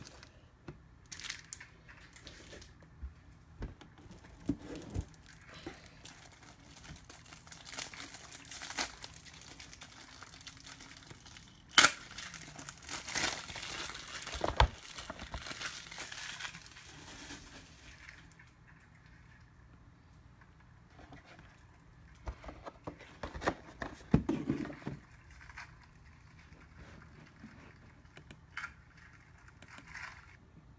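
Crinkling and rustling of plastic trading-card packaging being handled, in uneven bursts. There is a sharp knock near the middle, and the busiest crinkling comes just after it and again near the end.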